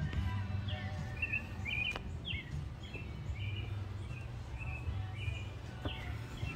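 A small bird singing a run of short, quick chirps about twice a second over a steady low background rumble, with a single click about two seconds in.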